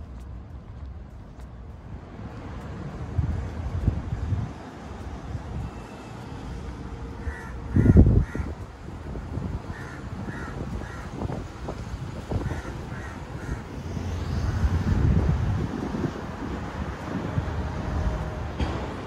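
Crows cawing in short runs of three or four calls, three times in all, over a low rumble of wind on the microphone that is loudest about eight seconds in.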